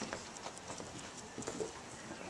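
A few faint, light taps of a Jack Russell Terrier puppy's paws and claws on a hard floor as it trots.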